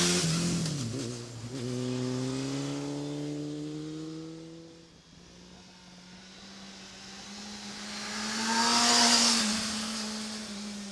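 Motorcycle engine passing close through a slalom: loud at first, the throttle closes and opens again about a second in as the pitch drops and climbs, then the sound fades away. A motorcycle engine builds up again and passes loudly about nine seconds in.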